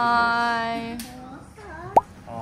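A high voice holding one long sung or drawn-out note for about a second and a half, fading away, then a quick rising squeak and a sharp click near the end.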